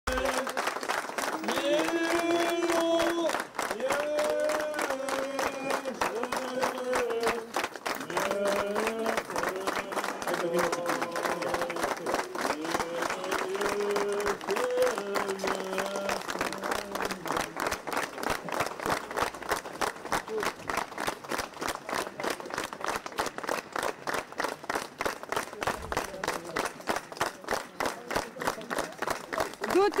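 Crowd applauding in a steady rhythm throughout. For the first half, a slow melody of long held notes carries over the clapping and stops about 17 seconds in.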